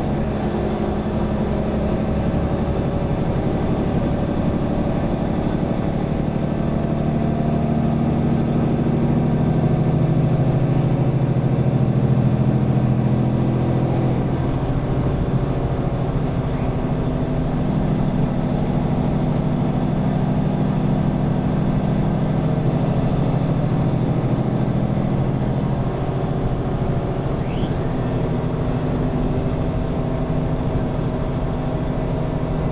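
Mercedes-Benz Conecto city bus's OM936 six-cylinder diesel heard from inside the cabin while under way. The engine note rises to its loudest about twelve seconds in, then drops and settles at a new pitch as the bus changes speed.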